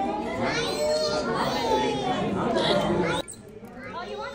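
Several voices talking over one another, children's among them. The sound drops abruptly a little after three seconds in, leaving fainter voices.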